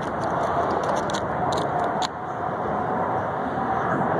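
Steady rushing roar of Blue Angels F/A-18 Hornet jet engines approaching for landing, with a faint whine over it.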